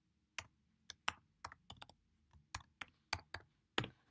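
Typing on a computer keyboard: about fifteen separate keystrokes at an uneven pace.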